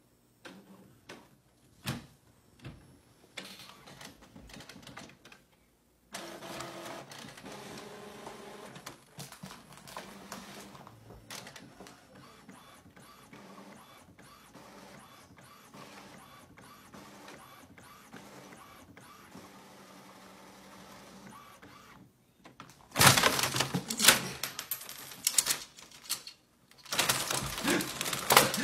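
Epson inkjet all-in-one printer at work. A few clicks come first, then a long steady whirring of the print mechanism, and near the end loud clattering bursts.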